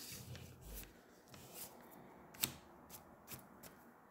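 Faint handling sounds of paper craft pieces on a tabletop: light rustling of cardstock with a few short clicks and taps, the clearest about halfway through.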